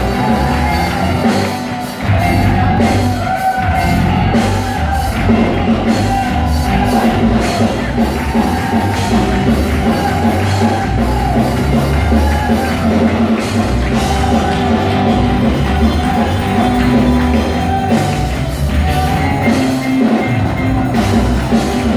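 Loud worship music at a church service, with singing over drums and other instruments.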